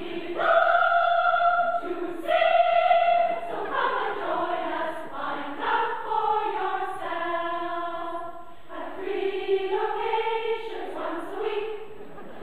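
Large community choir singing, in held notes that each last a second or two.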